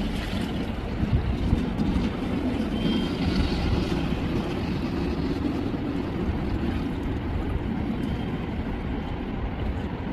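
Steady rushing noise of water and wind on the microphone as a swimmer swims breaststroke in a pool.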